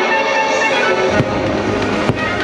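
Show music playing over a fireworks display, with a sharp firework crack a little over a second in followed by low rumbling booms.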